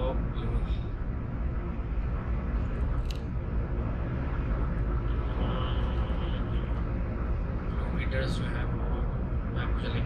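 Steady low rumble of a car cruising on an expressway, heard from inside the cabin: tyre and engine noise with no change in pace.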